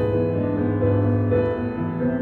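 Piano accompaniment for a ballet barre exercise: slow, sustained chords that change about every half second.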